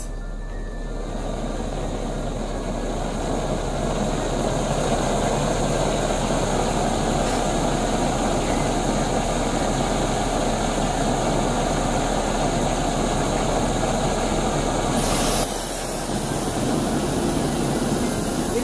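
Steady rushing of a Dyson fan's airflow blowing across the gas flame of a SOTO ST-310 regulator stove, mixed with the burner's hiss. The noise builds over the first few seconds, then shifts abruptly to a brighter, hissier sound about fifteen seconds in.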